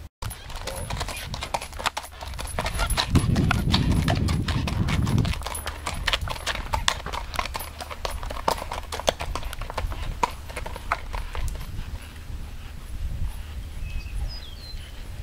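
Hoofbeats of a bay racking horse moving off under saddle on a gravel drive, a quick, steady run of sharp clip-clops. A low rumble runs under them for about two seconds early in the sequence.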